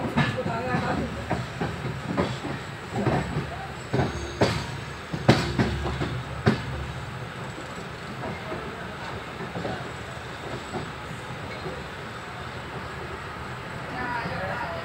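Moving passenger train heard from inside a coach at an open barred window: wheels knocking over rail joints and points, a run of sharp clacks in the first half, then a steadier running rumble.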